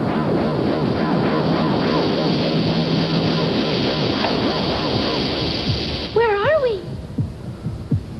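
Dense, steady electronic science-fiction soundtrack with a low hum under it, from the film's time-travel effects sequence. About six seconds in it gives way to a short warbling tone that wavers up and down, then drops quieter.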